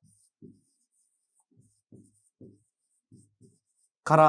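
Faint writing sounds: a run of short pen strokes on a board, about eight or nine in a few seconds, as a word is written out.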